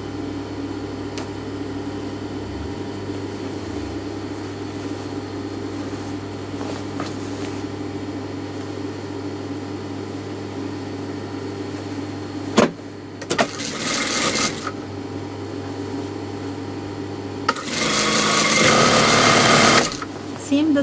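Industrial lockstitch sewing machine stitching a seam. Its motor hums steadily while the fabric is arranged, there is a knock about two-thirds of the way through and then a short burst of stitching, and a longer, louder run of stitching comes near the end.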